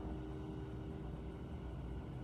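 Grand piano's last chord dying away, over a low steady rumble of room noise.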